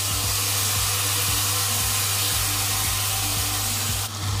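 Chopped tomatoes and onions sizzling in hot oil in a non-stick kadhai: a loud, steady frying hiss.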